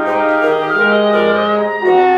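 Live wind quintet of flute, oboe, clarinet, bassoon and French horn playing sustained chords together. The chord shifts every half second or so, and a low note enters about halfway through.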